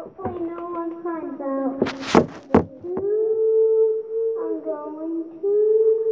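A child singing short melodic phrases, then long held notes. About two seconds in, two loud breathy hisses cut across the singing.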